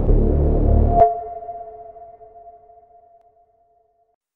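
Electronic label logo sting: a low pulsing synth drone cut off about a second in by a sharp hit, which leaves a steady ringing tone that fades away over the next two and a half seconds.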